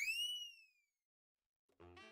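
An editing sound effect: a quick whistle-like tone that sweeps sharply up in pitch, levels off and dies away within about a second. Near the end, background music on saxophones comes in.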